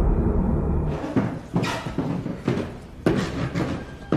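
A low music drone fades out in the first second, then about five sharp knocks and thuds come at uneven intervals, each with a short echo.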